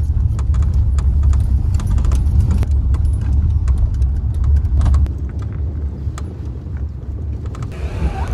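Road and engine rumble inside a moving car's cabin, with frequent light rattling clicks from the interior. The rumble eases off about five seconds in.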